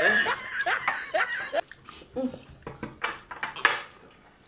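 A person laughing in short bursts with bending pitch, then a few breathy gasps near the end.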